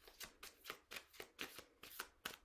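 A deck of full-size oracle cards being shuffled by hand, faint soft card slaps at about four a second.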